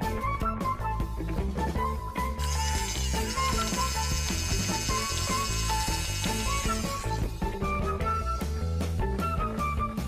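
Background music with a melody and steady bass throughout. From about two and a half seconds in until about seven seconds, a plastic toy dentist drill whirs as it is pressed down into the clay teeth.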